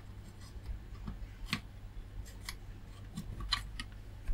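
Faint scattered clicks and light rubbing as multimeter test probes and their leads are handled and pressed onto the pins of a small circuit-board connector, the thermal-sensor plug of an amplifier module, over a low steady hum.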